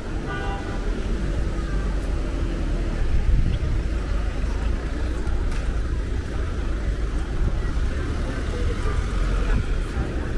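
Steady low engine rumble, with brief voices in the background.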